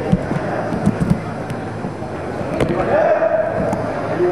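A handful of sharp, irregularly spaced pops from paintball markers over the chatter of players and onlookers.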